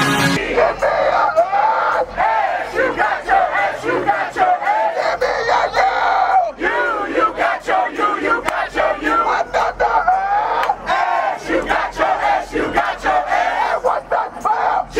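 A crowd of people shouting and cheering together in many overlapping voices, with sharp claps throughout. Music cuts off at the very start.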